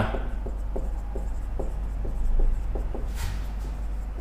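Marker pen writing on a whiteboard: a string of light taps and short scratchy strokes, with one longer stroke about three seconds in. A steady low hum runs underneath.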